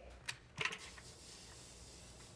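Sand being poured from a plastic vacuum dust bin into a funnel: a few short clicks and rustles in the first second, then only a faint hiss.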